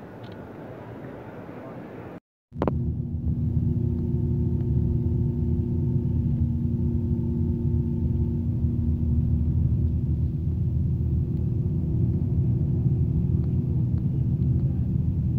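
Murmur of a crowd for about two seconds, then, after a sudden cut, the steady low rumble of a road vehicle driving along a highway, heard from inside the cabin, with a steady engine hum over it.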